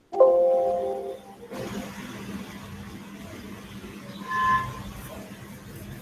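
A sudden ringing tone of several pitches that fades over about a second, followed by a steady hiss with a low hum and a short two-pitch tone about four and a half seconds in.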